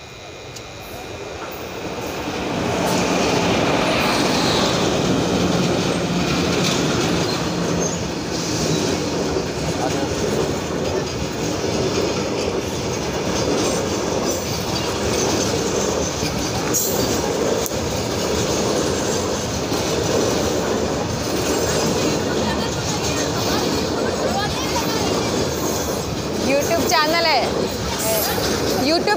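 Freight train on an overhead-wire electric line, led by an electric locomotive and hauling covered goods wagons, approaching and passing close by. It grows louder over the first few seconds as it nears, then holds as a steady rush of wagon wheels running over the rails.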